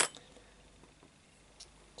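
A single sharp metallic click from a brass Yale thumb-turn euro cylinder lock held in a vise as it is locked up, then quiet room tone with one faint tick near the end.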